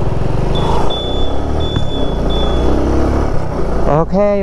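Motorcycle engine running steadily while riding along a road, with wind noise rushing over the microphone.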